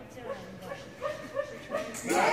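Dog giving several short, high-pitched whines in quick succession.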